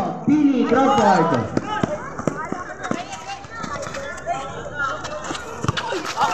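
Players and spectators shouting during a basketball game, loudest in the first second or so, with scattered sharp knocks of a basketball being dribbled on a concrete court.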